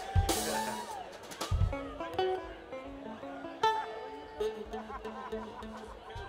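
Live band playing loosely: held and sliding string notes with a few scattered drum hits, no steady beat yet.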